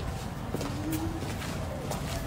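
Heeled shoes clicking on paving stones as a woman walks, about two steps a second. A single low bird call, held and rising slightly for under a second, comes about half a second in.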